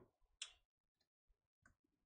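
Near silence: room tone with a faint short click about half a second in and a smaller one near the end.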